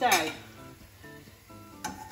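A pancake frying faintly in an oiled frying pan, with one sharp clink near the end as a metal spatula touches the pan.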